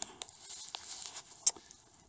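Hand-held camera being swung and handled: faint rustling and scraping with a few light clicks, and one sharp click about one and a half seconds in.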